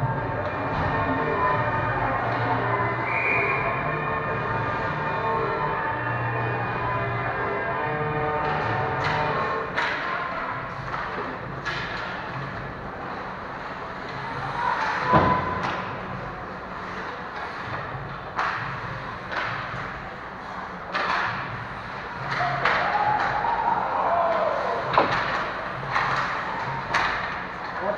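Ice hockey play in an arena: sharp clacks and knocks from sticks, puck and boards, with skates on the ice. The knocks come thick and fast from about nine seconds in. Before that a steady droning tone fills the rink.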